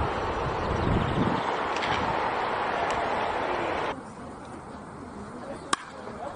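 Steady background noise that drops sharply about four seconds in, then a single sharp crack of a baseball bat hitting a pitched ball near the end.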